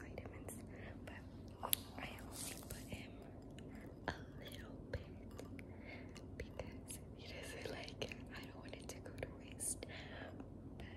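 A woman whispering close to the microphone, with a few sharp clicks among the words, the loudest a little under two seconds in.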